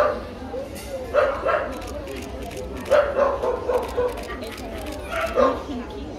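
Dogs barking and yipping in short repeated bursts, with people talking in the background.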